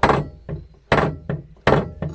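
A pedal of a Projekta aftermarket pedal box in a VW Beetle, pumped by hand and knocking sharply against its stops. There are three loud thunks and two fainter ones in quick succession, each with a brief metallic ring. The pedal swings freely with a smooth action.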